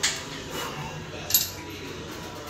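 Weight stack of a multi-station chest-press machine clinking during a press rep: a metallic clink at the start and a second, sharper one with a brief high ring about a second and a half in.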